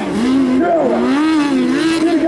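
1600cc autocross race cars' engines revving on the dirt track, several engine notes overlapping, their pitch wavering up and down.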